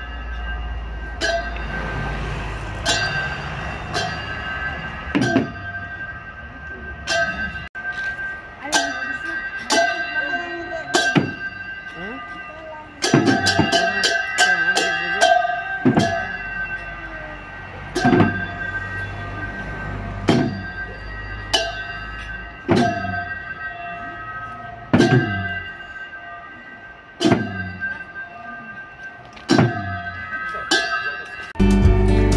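Bhutanese folk-dance percussion: hand-held drums beaten at an uneven pace, about one stroke every one to two seconds with a quicker flurry around the middle, each stroke leaving a metallic ringing.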